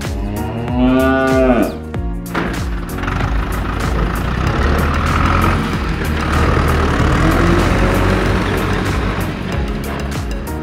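A cow mooing once, rising then falling, for about a second and a half. Then, from about two seconds in, a tractor engine sound running steadily over background music.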